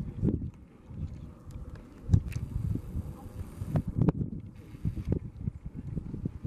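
Piton de la Fournaise's lava fountains erupting: an irregular low rumble with a run of dull thuds and chugging blasts, and two brief surges of hiss about two and a half and five seconds in.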